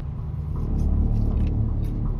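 Low, steady rumble of a car idling, heard from inside the cabin.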